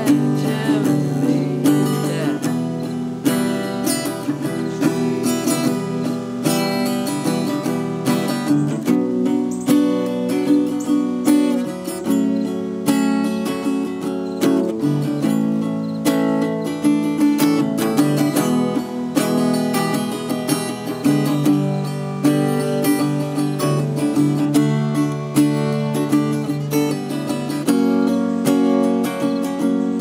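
Small-bodied Yamaha junior acoustic guitar played solo, a steady run of plucked and strummed chords that change every second or two, with no singing.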